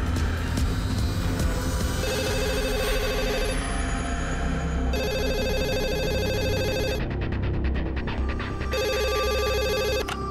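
A telephone ringing in three separate bursts over tense background music, at about two, five and nine seconds in.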